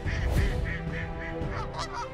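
Flock of geese honking: a rapid string of short, repeated honks, about five a second, over background music.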